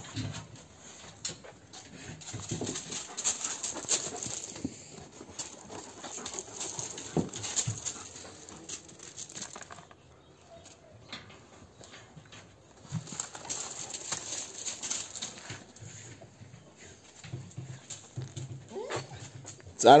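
Dogs sniffing and moving about close by, with scattered light knocks and scuffs.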